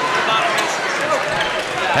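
Basketball being dribbled on a hardwood gym floor over the steady noise of a crowd in the gymnasium.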